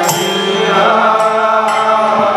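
Devotional kirtan music: a harmonium playing sustained chords under chanted singing, with a two-headed barrel drum and small hand cymbals. A bright cymbal strike rings out right at the start.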